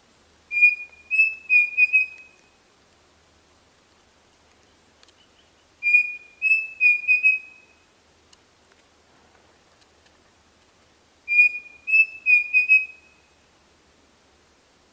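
Pavonine cuckoo singing: three phrases of clear whistled notes, about five seconds apart. Each phrase is a run of about five notes, the later ones a little higher in pitch and quicker.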